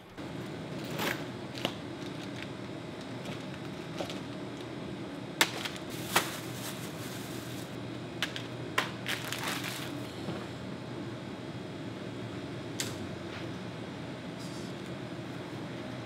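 Fishing tackle being handled: scattered clicks and knocks of rods and gear, with rustling of soft-plastic bait packs and a tackle bag, over a steady low hum.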